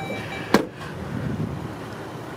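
Dodge Journey's driver's door being shut: one sharp thump about half a second in, over steady outdoor background noise.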